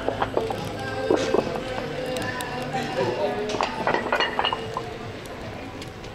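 Bar-terrace ambience: people chatting over background music, with several sharp clinks of tableware and glasses, then growing quieter toward the end.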